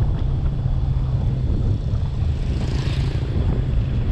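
Steady, gusty low rumble of wind buffeting the microphone of a camera mounted on a moving car's roof, mixed with the car's road noise, with a brief higher hiss about three seconds in.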